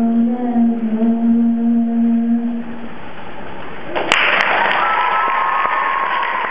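The song's final note is held for about three seconds and fades. About four seconds in, audience applause breaks out suddenly, with a cheer over it.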